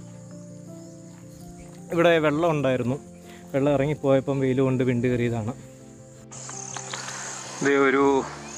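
A man talking over soft, steady background music, with a high thin chirring of insects behind. About six seconds in the music stops and a louder insect chorus takes over, with the man's voice again near the end.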